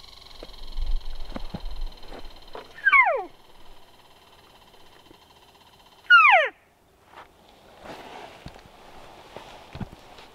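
Two elk cow mews, each a short call that falls steeply in pitch, about three seconds apart; the second is louder.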